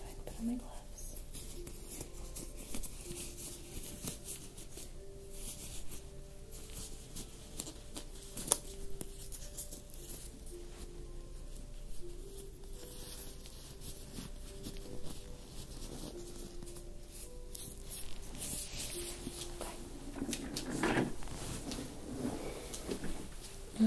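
Disposable clear plastic exam gloves being pulled on and worked over the hands, crinkling and rustling on and off, with one sharp click about eight seconds in. Soft background music with slow held notes underneath.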